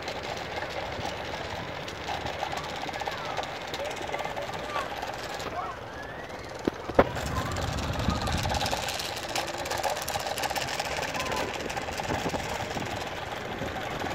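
Outdoor park ambience: distant voices over a steady background noise, with two sharp clicks about seven seconds in.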